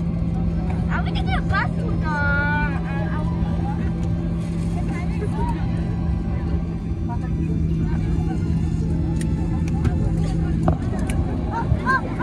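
Airliner cabin noise while taxiing after landing: a steady low engine rumble with a constant droning hum. A voice is heard briefly about one to three seconds in.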